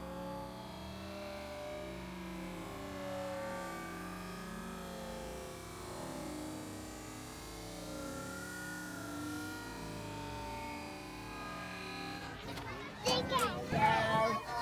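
Playground background of children's voices and chatter at a distance, no single voice clear. About a second before the end a nearby voice calls out loudly.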